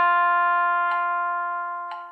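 Trumpet holding a long, steady written G (sounding concert F), fading toward the end: the decrescendo back to piano in a long-tone exercise. A metronome clicks about once a second.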